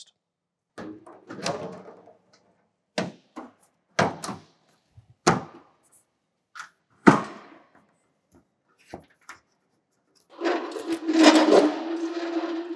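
Clunks and knocks of a flat target board being handled and fitted onto a Delphi CRC150 ADAS calibration rig, about half a dozen separate knocks. Near the end comes a longer scraping noise over a steady hum, lasting about three seconds.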